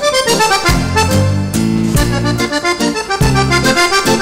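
Accordion playing a lively liscio dance tune: fast runs of melody notes over steady bass notes, with the band behind it.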